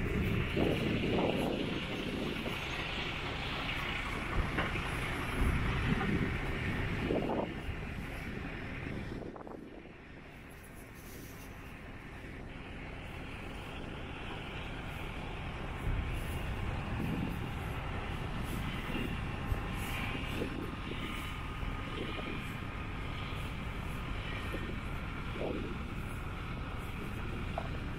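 Outdoor ambience: wind buffeting the microphone in irregular gusts over a steady low rush. The rush fades about ten seconds in and then builds again.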